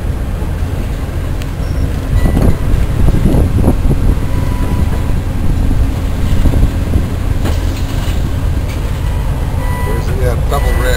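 Train rolling along the track, heard from aboard: a steady low rumble of wheels and running gear that grows a little louder about two seconds in.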